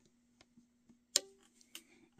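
A few faint plastic clicks, with one sharper snap a little past halfway and a smaller one just after: a rubber loom band is stretched across the clear plastic pins of a Rainbow Loom with a plastic hook.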